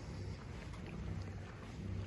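Faint, steady low hum of outdoor background noise.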